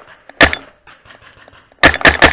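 Two sharp cracks of paintball fire, one about half a second in and another near the end.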